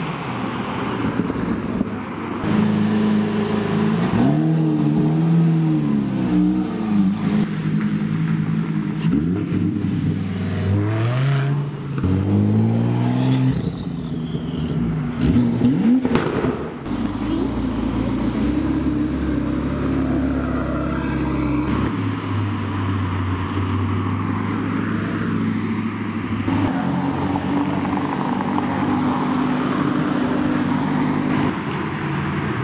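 High-performance car engines revving and pulling away one after another, among them a Lamborghini Urus and a Porsche 911 Turbo S. The revs rise and fall several times in the first half, then settle into a steadier engine drone in the second half.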